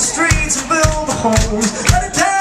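Live rock band playing, with a kick drum beating about twice a second, cymbals, and a sung melody over the instruments.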